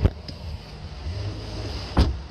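Wind buffeting and handling noise on a handheld camera microphone, a low rumble, framed by a sharp thump at the start and another at the end.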